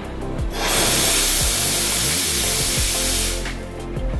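Steam wand of a Teknika one-group espresso machine opened: a loud, even hiss of steam starts about half a second in and is shut off after about three seconds. This is a test of the boiler's steam once the machine has heated up.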